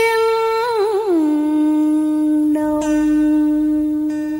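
A woman's voice in Vietnamese cải lương singing, drawing out a long vowel at the end of a line. The held note wavers with vibrato, then slides down about a second in to a lower note held steadily.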